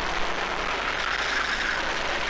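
Racing kart at speed heard through an onboard camera's microphone: a steady rushing of engine and wind noise.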